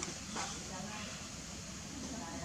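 Faint, indistinct voices over a steady low outdoor rumble, with a short click about half a second in.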